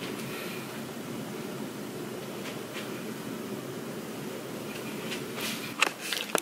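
Steady low hum of room ventilation, like a hotel air-conditioning unit, with a short knock of the camera being handled just before the end.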